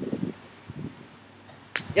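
A single sharp hand clap near the end, after a quiet stretch with a faint murmured voice.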